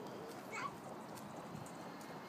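A toddler's short high-pitched call, rising in pitch, about half a second in, over faint outdoor background noise.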